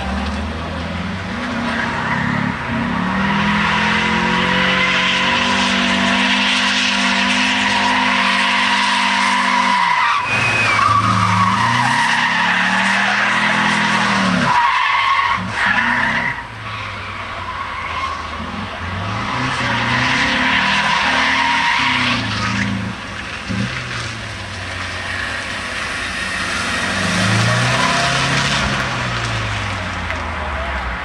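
Car engine revved hard and held at high revs, falling off and climbing again several times, with the tyres squealing as the car slides through tight turns on asphalt.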